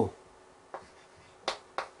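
Chalk tapping and stroking on a chalkboard while writing: three short, sharp clicks, one about a second in and two close together near the end.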